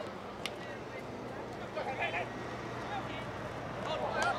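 Rugby field sound: faint shouts from players and spectators over a steady low hum, with one sharp click about half a second in.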